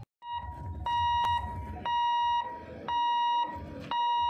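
Railway level-crossing warning alarm beeping: a steady high tone switching on and off about once a second, four beeps, over a low rumble.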